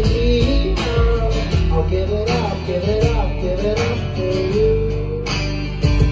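Live band playing a song: strummed acoustic guitar, electric bass and steady drum hits, with a male voice singing a sliding melody line.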